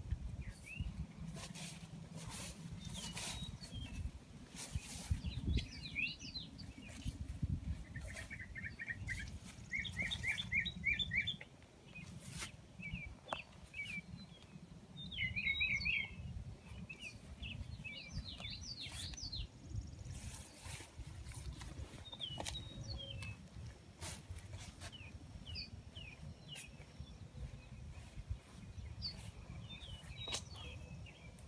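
Songbirds chirping and trilling in repeated short phrases, with a rapid trill about eight seconds in and another about fifteen seconds in, over a steady low rumble and occasional sharp clicks.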